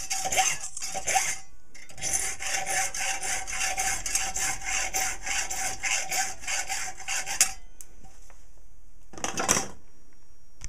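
Hand file stroking back and forth across small brass pieces clamped in a bench vise: a few strokes, a short pause, then a steady run of quick strokes for about five seconds, then a stop and one last stroke near the end.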